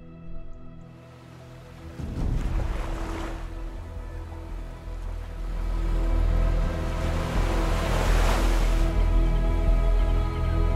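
Background music with steady held tones, under strong wind buffeting the microphone. The wind noise comes in about a second in and swells in gusts around two to three seconds and eight seconds in.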